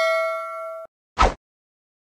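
A notification-bell ding sound effect ringing on with several steady tones, then cut off short just under a second in. About a second later comes a brief soft pop.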